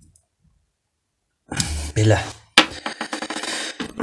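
Near silence, then about a second and a half in, loud rustling followed by a quick run of clicks and knocks as tools and wire leads are handled on a workbench.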